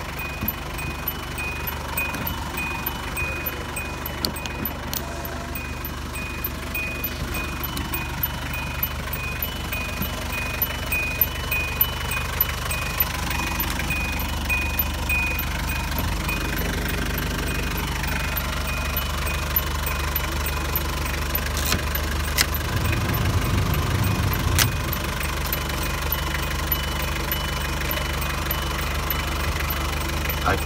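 Hyundai Grace diesel engine idling steadily. For the first half a high electronic beep repeats at an even pace, then stops; a few sharp clicks come about two-thirds of the way through.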